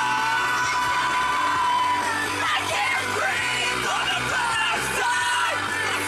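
Pop music playing while people sing and yell along loudly, holding one long note over the first two seconds.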